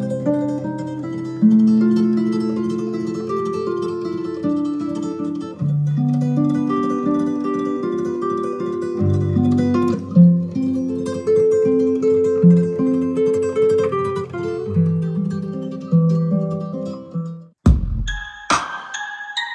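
Instrumental guitar music, plucked notes over sustained bass notes, played through a pair of ELAC bookshelf speakers driven by a 1989 HiFonics Pluto VII amplifier. The music breaks off abruptly near the end.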